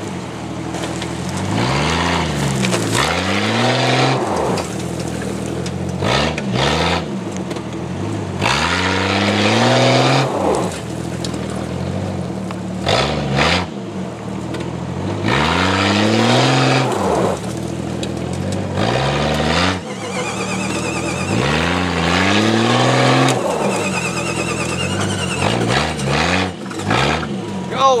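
A 1998 Jeep Cherokee XJ's engine revving up and dropping back again and again, each rev lasting a second or two, as it pulls a stuck Jeep out of mud on a tow strap in short yanks.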